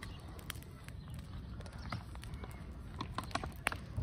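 Burning dry grass crackling, with scattered sharp snaps that come thickest about three seconds in, over a low steady rumble.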